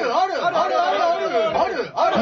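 Several people's voices talking over one another, with a brief lull just before the end.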